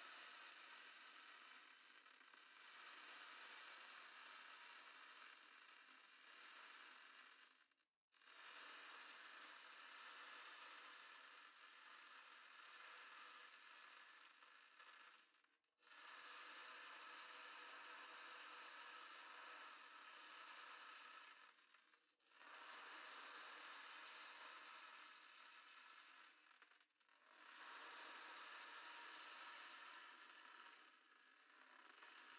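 Ocean drum tilted slowly, its small beads rolling across the drumhead in a soft, wave-like rushing wash. Five long swells, each several seconds, are separated by brief pauses as the drum is tipped back the other way.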